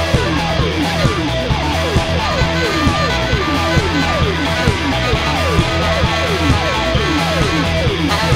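Punk rock band playing live in an instrumental passage without vocals: electric guitar, electric bass, drums and tenor saxophone. A falling pitch slide repeats about twice a second over a steady bass line.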